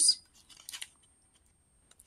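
Faint, brief rustles and clicks of paper binder pages and a clear plastic pocket being handled, about half a second in.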